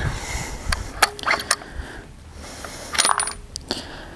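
Bolt of a Howa Super Lite bolt-action rifle being worked after a shot: a series of metallic clicks and scrapes, then a cluster of sharper ringing metal clinks near three seconds, as the spent case is extracted. The case sticks on the way out, which the shooter puts down to not enough spring in the extractor or a bad angle.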